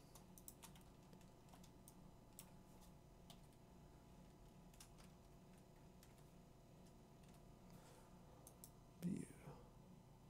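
Faint, scattered clicks of a computer keyboard and mouse as shortcuts are pressed, over a low steady hum. Just after nine seconds comes a short, louder vocal sound.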